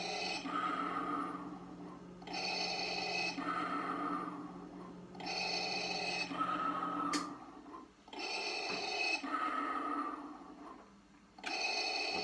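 Darth Vader's mechanical respirator breathing played by the Hasbro Black Series electronic Darth Vader helmet's built-in speaker: about four slow inhale-exhale cycles, roughly three seconds each, stopping just before the end.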